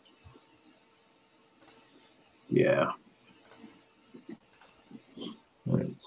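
Scattered light clicks and taps from input on a computer drawing program, with a short voiced sound about halfway through and speech starting near the end.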